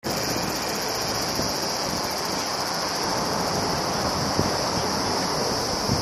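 Outdoor ambience of a summer day: a steady, high-pitched insect drone, a cicada chorus, over a low wash of general background noise.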